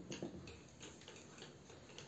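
A few faint ticks and taps of a marker writing on a whiteboard, mostly in the first half second.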